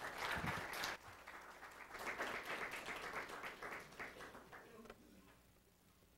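Audience applauding: many hands clapping together, loudest at first, then thinning out and dying away about five seconds in.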